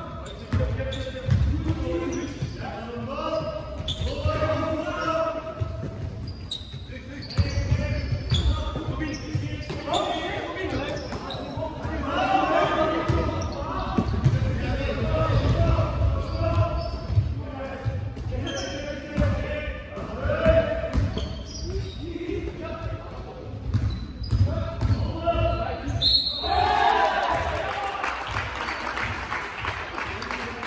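Basketball game in a sports hall: a basketball bouncing on the hard court floor in runs of dribbles, with players' voices calling out, echoing through the large hall.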